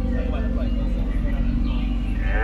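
Tour boat's motor running with a steady low rumble, with faint voices around it.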